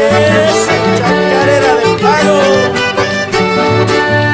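Accordion-led chamamé music, the accordion carrying a melody with gliding notes over a steady strummed rhythm.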